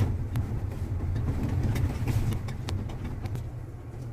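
Car engine and road noise heard from inside the cabin while driving slowly: a steady low rumble with a few faint ticks, easing slightly toward the end.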